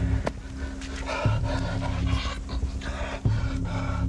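A man breathing hard in heavy, panting breaths, about five in a row, straining from heat and thirst. Under it runs a low, steady music drone with a few dull hits.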